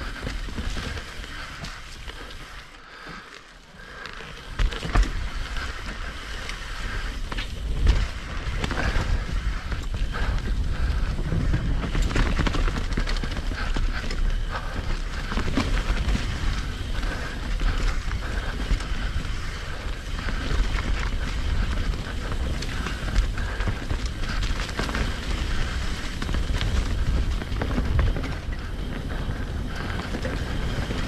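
Hardtail mountain bike descending a dirt singletrack: tyres rolling over dirt and leaves, the bike rattling over rough ground, with wind on the microphone. It is quieter for the first few seconds, then louder from about four seconds in, with sharp thumps near five and eight seconds.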